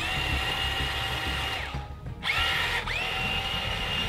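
Small electric motor of a remote-control amphibious monster truck whining as it drives in reverse, pulling against a snagged fishing line. The whine spins up, cuts out for a moment about two seconds in, then spins up again and holds steady.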